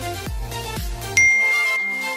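Background music with a steady beat. A little past a second in, the beat drops out and a single bright notification-bell ding rings out and fades: the sound effect of a subscribe-button animation.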